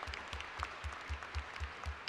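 Audience applause from a large crowd, fairly faint and many-handed, with a low regular thud about four times a second underneath.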